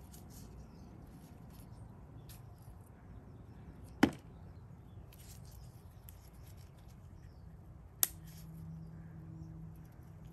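Faint dry crackling and rustling of Haworthia roots being teased apart with a metal spatula tool and gloved fingers, with two sharp clicks about four and eight seconds in. A faint steady hum starts after the second click.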